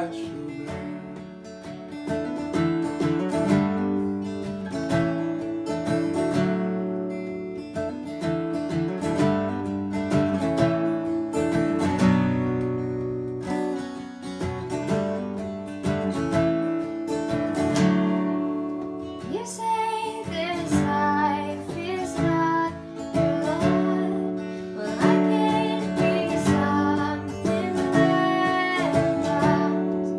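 Martin D-35 acoustic guitar strummed steadily through an instrumental break of a folk/bluegrass song. From about twenty seconds in, a higher, wavering melody line plays over the strumming.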